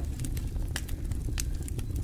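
Wooden cooking stick mashing and scraping stiff, nearly cooked ugali against the sides of an aluminium pot: scattered soft knocks and clicks over a low steady rumble.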